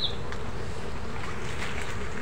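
Steady rushing outdoor noise with a single rising chirp from a bird right at the start.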